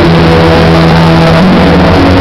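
Very loud electronic dance music from a DJ's set over a club sound system, with held bass and synth notes that shift about one and a half seconds in.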